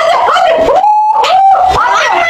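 Excited shouting from girls, with a long held cry about halfway through that then slides down in pitch.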